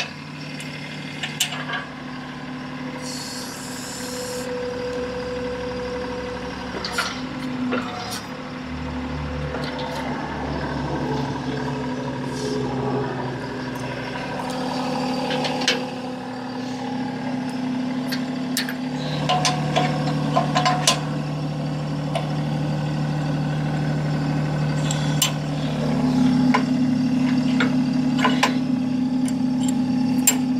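TYM T264 compact tractor's diesel engine idling steadily, its hum growing louder about two-thirds of the way in. Occasional metal clicks and clanks come from steel parts being handled on the backhoe.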